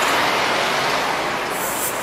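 Road traffic on a busy main road: a steady rush of passing vehicles that fades slightly, with a brief high hiss about a second and a half in.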